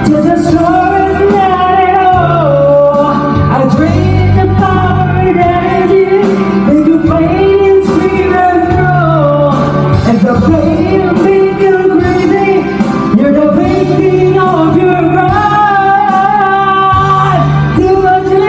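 A man singing a slow, emotional song into a microphone over a backing track with steady bass notes, his voice amplified and wavering through long held notes.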